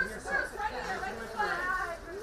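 Several voices talking over one another: press photographers calling out and chatting.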